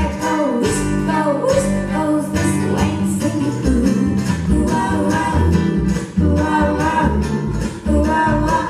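Live acoustic string band playing: fiddle, mandolin, acoustic guitar and upright bass, with a woman singing over a steady bass line.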